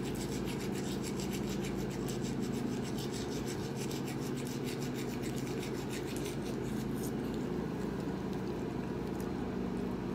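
A baby toothbrush scrubbing a small dog's teeth in quick, short rubbing strokes, which stop about seven seconds in. A steady low hum runs underneath.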